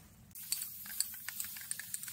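Faint rustling with small, irregular clicks as a horse's long tail hair is fanned out by hand.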